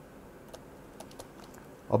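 Light, irregular clicks of a stylus tapping on a pen tablet or screen while writing by hand, a couple each second.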